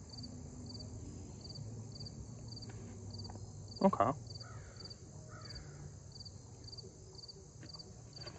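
Insects chirping in an even rhythm, about two high chirps a second, over a steady high buzz.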